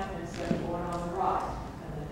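A woman's voice talking, with a dancer's shoe knocking once on a wooden parquet floor about half a second in.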